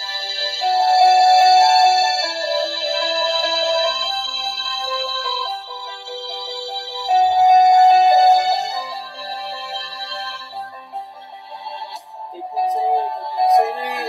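Low-quality recording of a choir performance: high voices hold long sung notes over accompaniment. The music thins out and drops quieter near the end before swelling again.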